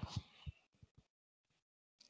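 Near silence, broken by a few faint low thumps in the first half second.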